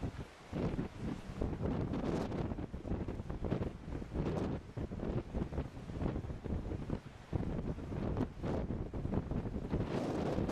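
Wind buffeting the camcorder's microphone, a rushing noise that swells and drops in irregular gusts.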